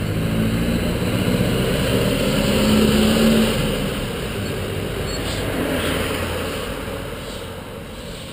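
Street traffic: a motor vehicle's engine grows louder, peaks about three seconds in, then fades as it passes, over a steady rush of wind and road noise.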